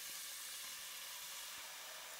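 Kitchen tap running steadily, a thin stream of water filling a stainless steel pot in a sink.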